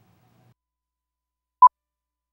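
Near silence, broken about one and a half seconds in by a single very short, loud electronic beep on one steady pitch. It is the kind of cue or sync beep left at an edit point going into a break segment.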